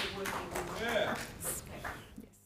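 Indistinct voices in the audience with a few scattered claps, as the applause for the answer dies away.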